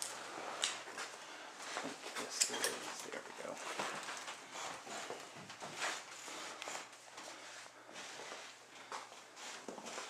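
Quiet shuffling footsteps, scrapes and camera-handling clicks from several people moving about a small basement room, with faint low voices.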